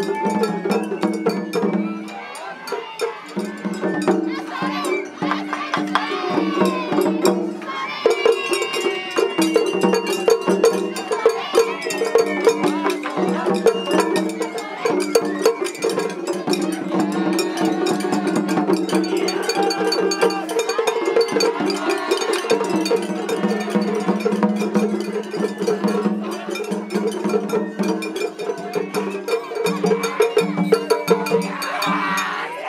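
Japanese festival hayashi played on a parade float: shime-daiko and taiko drums with shinobue flutes and a rapidly struck small hand gong, over crowd voices. The music dips briefly about two seconds in, then runs on.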